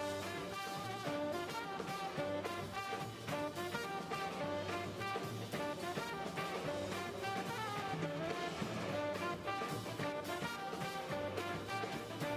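Live jazz band playing an upbeat number: a horn section of tenor saxophone, trumpet and trombone over a drum kit keeping a steady beat.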